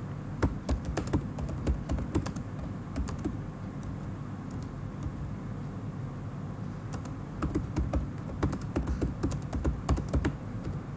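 Typing on a computer keyboard: irregular quick key clicks in two spells, one at the start and another in the second half, over a low steady hum.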